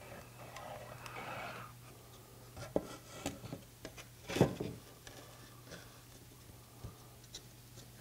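Quiet handling sounds: a caulk gun squeezing out a bead of construction adhesive onto a wood wall board, then a few light knocks as the board is set against the wall, the loudest about four and a half seconds in. A low steady hum runs underneath.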